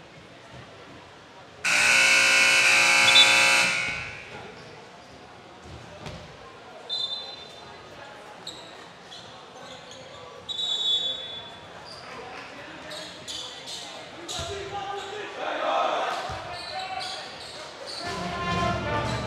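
Gym scoreboard horn sounding one steady buzz for about two seconds, calling the end of a timeout. A few short high squeaks follow, then a basketball bouncing repeatedly on the hardwood court, in a large echoing hall with voices.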